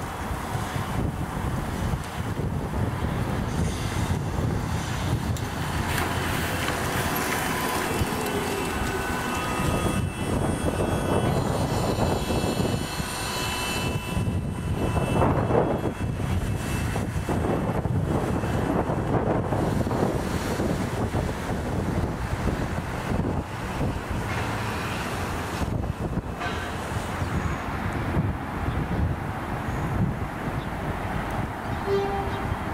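City bus engine running as a bus pulls away and drives off, with wind buffeting the microphone.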